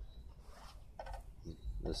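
A short pause over a faint low rumble, then a man's voice starting near the end.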